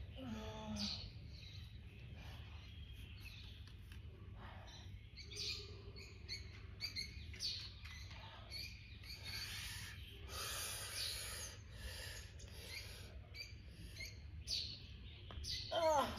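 Garden birds chirping and calling in many short, scattered calls over a steady low background rumble.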